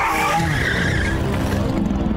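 A noisy skidding sound effect under an animated intro. It opens with a falling sweep and then runs on as a dense rush.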